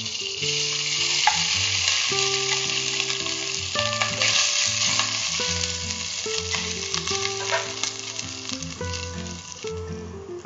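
Hot ghee sizzling in a steel pot as cooked long-grain rice is tipped in over fried cashews and raisins and stirred with a wooden spatula: a loud steady hiss that eases near the end. Soft background music with low notes plays underneath.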